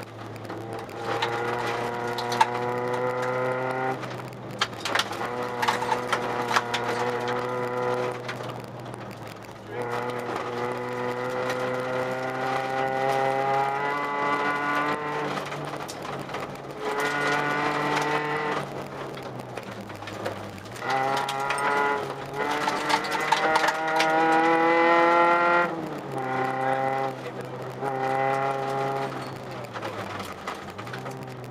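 Inside the cabin of a Volkswagen Jetta Mk2 rally car: its four-cylinder engine is driven hard on a gravel stage. The pitch climbs steadily in repeated pulls and drops sharply between them, about six times, with scattered sharp clicks throughout.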